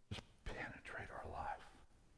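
A man's voice speaking softly, the words hushed and indistinct, stopping shortly before the end.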